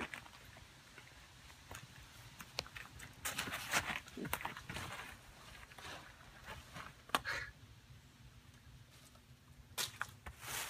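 Footsteps rustling and crunching in dry fallen leaves, in scattered bursts with quiet stretches between and a couple of sharp clicks.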